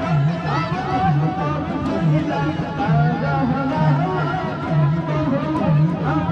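Devotional zikir sung by a man into a microphone, his voice rising and falling over a steady low pulse that repeats a little faster than once a second.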